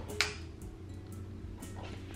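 A single sharp click about a fifth of a second in, then a low steady hum.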